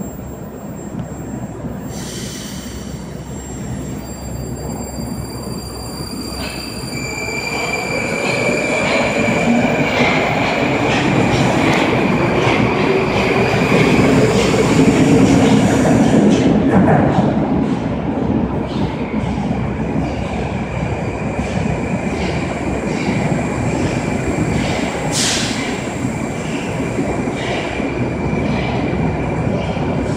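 Moscow metro 81-765/766/767 'Moskva' train pulling out of the station: its traction motors whine, rising in pitch as it speeds up, over the rumble of steel wheels on rail. The sound grows loudest as the last car passes, then fades into the tunnel.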